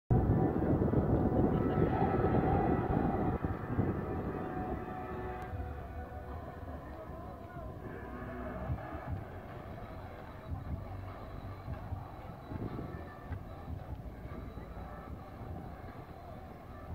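Wind rumbling on the phone's microphone, loud for the first three or four seconds and then easing, with faint voices of people around.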